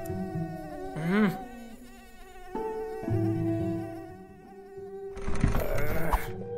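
A cartoon mosquito's buzzing whine, drifting up and down in pitch as it circles, with a brief wavering warble about a second in, over soft background music. Near the end comes a loud noisy burst with thumps, the loudest part.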